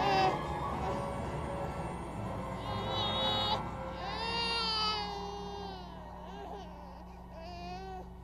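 A high crying voice, in three drawn-out wavering cries whose pitch rises and falls, over steady low background music.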